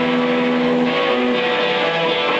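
Electric guitar played through an amplifier with overdrive, holding long sustained notes: a higher note rings on throughout while a lower note drops out about a second in and briefly comes back.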